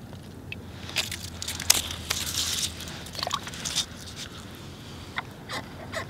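Irregular crunching and scraping on snow-covered ice, with scattered sharp clicks, as line is handled at an ice-fishing hole. The busiest stretch comes about one to four seconds in.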